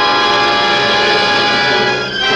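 Orchestral film score holding a loud, sustained chord.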